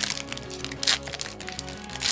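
Pokémon booster pack's foil wrapper being torn open and crinkled in the hands: a run of sharp crackles, with a louder rip about a second in. Background music with steady held notes plays underneath.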